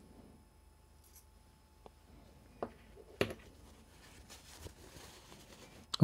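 Small metal parts of a disassembled fishing reel clicking as a tool and a spool bearing are handled: a few scattered soft clicks, with one sharper click a little past three seconds in.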